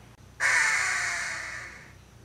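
A red-shouldered hawk gives one loud, harsh, drawn-out scream. It starts suddenly about half a second in and fades away over the next second and a half.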